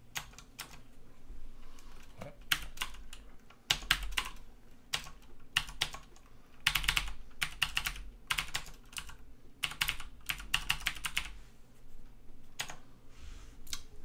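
Typing on a computer keyboard: quick bursts of keystrokes separated by short pauses.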